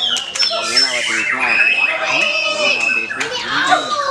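White-rumped shamas singing in competition: a dense, overlapping mix of quick whistles and rising and falling phrases from several birds at once, over a background of people's voices.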